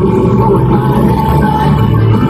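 Loud live country music from a band on stage, amplified through the venue's sound system and heard from the audience, heavy in the bass.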